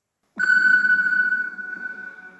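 A synthesized sound-effect sting for a title card: one high steady tone over a low rumble, starting suddenly about a third of a second in and fading away over the next two seconds.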